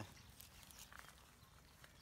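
Near silence with a few faint, scattered rustles and light clicks of a dog and people moving about on grass.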